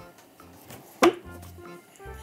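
A kitchen knife knocks once, sharply, on a wooden chopping board about halfway through, over quiet background music.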